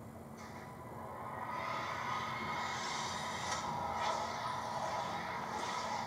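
Film soundtrack played back through a TV's speakers and heard in the room, rising in level over the first two seconds and then holding steady.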